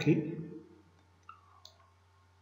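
Computer mouse clicking twice, faintly, about a third of a second apart.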